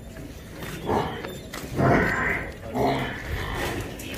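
Water buffalo calling, three calls in a row, the loudest about two seconds in.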